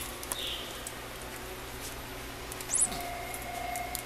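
A cat toy's electronic bird noise: a brief, very high chirp near the end, followed by a steady held tone for about a second.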